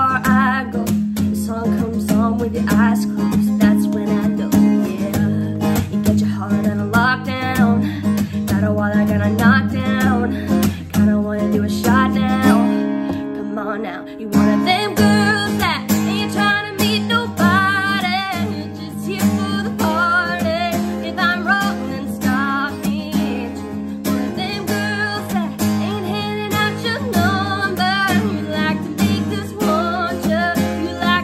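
A woman singing a country ballad to her own strummed acoustic guitar. The singing breaks off briefly about halfway through while the guitar carries on.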